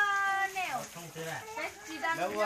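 A child's high voice calls out in one long held note that drops away after about two thirds of a second, followed by softer scattered voices.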